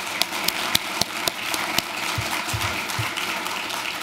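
Audience applauding, the claps thinning out after about two seconds.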